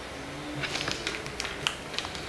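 Sharpie marker working on a journal page: a quick run of short, dry scratches and clicks from about half a second in, the sharpest one shortly before the end.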